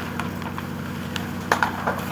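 Burning timber of a wooden house cracking and popping, sharp snaps with a quick cluster about one and a half seconds in, over a steady low motor hum.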